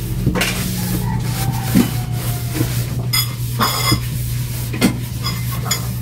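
An air fryer basket being handled and wiped out by hand, with a few light knocks and clicks against it, over a steady low hum.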